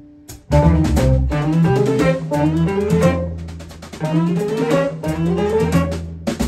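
Live band playing an instrumental tune on violin, clarinet, electric guitar, bass and drums. A held note dies away, then the full band comes in together about half a second in, with rising melodic runs over a steady bass line.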